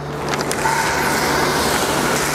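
Raw chicken longganisa sausages sizzling steadily in a hot, dry nonstick pan, the hiss building over the first half second.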